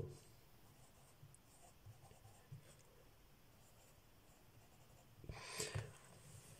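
Faint scratching of handwriting on a paper workbook page, with a louder scratchy stretch near the end.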